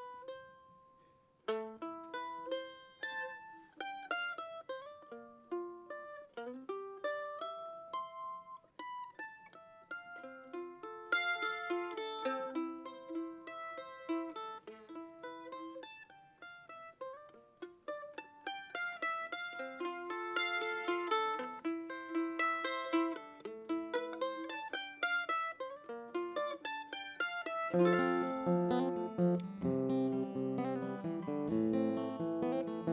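F-style mandolin picking a solo melody of single notes as the unaccompanied opening of a song. An acoustic guitar starts strumming near the end.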